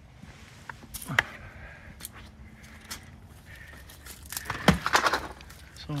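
Handling noises from a pump sprayer and its wand being carried to a palm: scattered clicks and knocks, then a louder burst of rustling as the wand goes in among the stiff palm fronds near the end.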